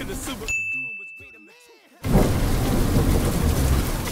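Commercial sound design: music dies away under a single high steady tone that fades out, then about two seconds in a sudden loud rushing noise starts, like heavy rain.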